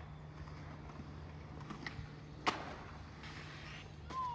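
A skateboard trick at a distance: a single sharp clack of the board about two and a half seconds in, with a fainter click shortly before, over a steady low outdoor hum.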